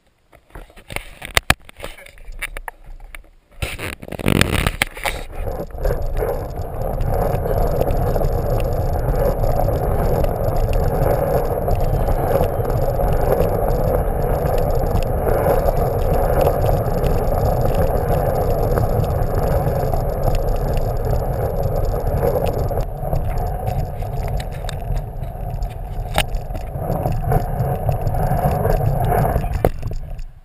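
Hard plastic wheels of a PlasmaCar ride-on toy rolling across a hardwood floor: a steady rolling noise starts about four seconds in and stops near the end. It is preceded by a few light knocks.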